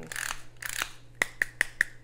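Pepper mill grinding peppercorns in two short twists, followed by four quick, sharp clicks.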